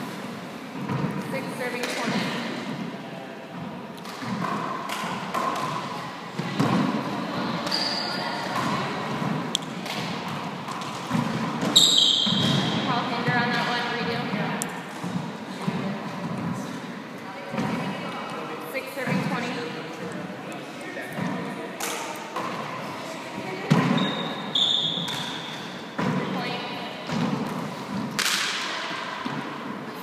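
A handball hitting the walls and hardwood floor of an enclosed court, with thuds echoing in the room, amid talking. A few short, high sneaker squeaks on the wooden floor, the loudest about twelve seconds in.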